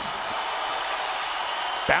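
Steady arena crowd noise from a hockey crowd during live play.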